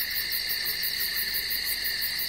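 A steady, high-pitched insect-like trill, typical of a chirping-crickets sound effect, cut in and cut off abruptly.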